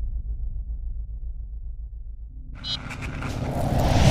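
Logo-sting sound effects: a low, pulsing rumble, then from about two and a half seconds in a rising swell of noise that builds to a loud peak at the end.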